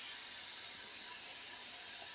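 Thin crepe batter sizzling with a steady hiss in a very hot cast-iron skillet, just after being ladled in.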